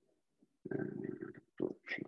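A man mumbling to himself, low and indistinct, in two short runs starting just over half a second in.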